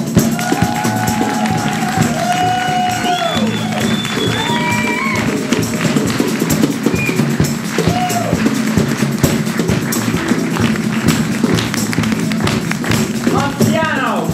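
Live band music with a tambourine shaking steadily throughout, and a few long gliding melodic notes over it in the first few seconds.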